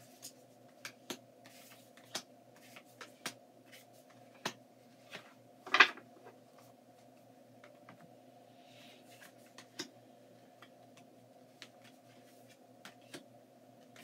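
Tarot cards being handled: scattered soft taps and rustles, with one louder sound about six seconds in, over a steady low room hum.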